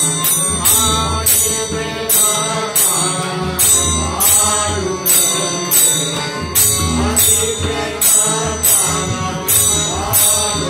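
Devotional bhajan music: voices singing to a harmonium and two pairs of tabla, with a bright metallic clash, like small hand cymbals, marking the beat about every 0.6 seconds.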